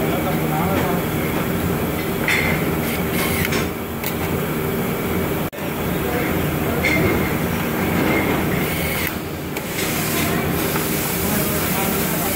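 Factory-floor noise: a steady machinery din with voices in the background. A few short runs of a higher whine come from a hand-held brushless electric screwdriver driving screws into plastic water-valve parts.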